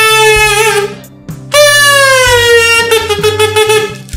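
A comb wrapped in a plastic bag played like a kazoo: a voice hummed against the plastic sets it buzzing. There are two long buzzy notes. The first ends about a second in, and the second starts about a second and a half in and slides slowly down in pitch.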